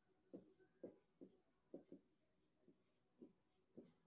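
Dry-erase marker writing on a whiteboard: about eight short, faint strokes as a word is written out.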